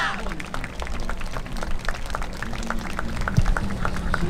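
Audience applause with scattered individual claps, over a murmur of crowd voices, at the close of a yosakoi dance performance.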